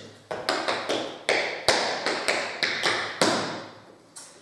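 Tap shoes striking a tiled floor in a quick rhythmic run of sharp taps, a heel shuffle, drop, tap, step, pick-up sequence, stopping near the end.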